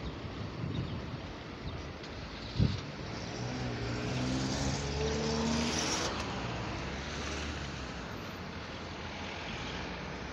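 A car driving past on the street, its engine and tyre noise swelling to a peak about halfway through and then fading away. A single sharp knock comes shortly before the car is heard.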